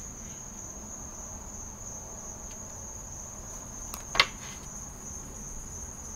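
A steady high-pitched tone runs in the background throughout, with one sharp tap about four seconds in as a deck of tarot cards is handled over a wooden table.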